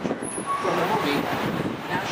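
A tour guide talking over the steady noise of a sightseeing bus moving through city street traffic.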